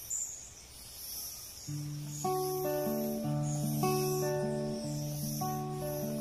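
Acoustic guitar starting a slow song intro: after a quiet second and a half, a low bass note and chords are plucked one after another, each left to ring.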